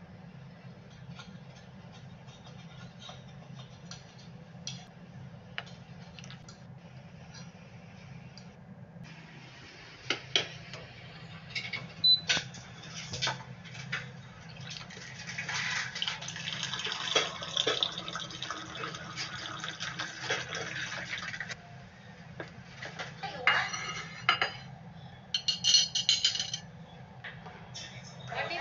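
Dishes and cutlery clinking, then, about halfway through, hot water running from an electric thermo pot's push-lever dispenser for about six seconds, followed by more clinks.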